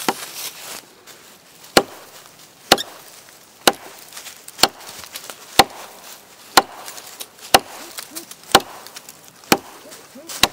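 A Swamp Rat Chopweiler, a large chopping knife, striking into a fallen log: a steady series of sharp wood chops, about one a second, nine in a row starting near two seconds in.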